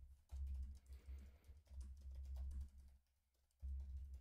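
Typing on a computer keyboard: quick runs of key clicks with a deep low thudding under them, and a short pause about three seconds in before the typing resumes.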